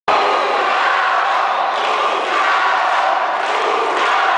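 Arena crowd of spectators cheering and shouting, a steady mass of voices with no pauses.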